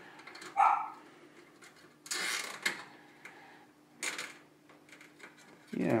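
Cables and a twist tie being handled and pulled through the steel case, giving short rustling, scraping bursts about two and four seconds in, over a faint steady hum. A brief, louder mid-pitched sound comes about half a second in.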